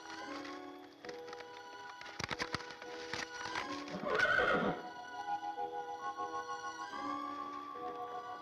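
A horse whinnies once, about four seconds in, the loudest sound here, after a short run of hoof clops. Soft background music with long held notes runs underneath.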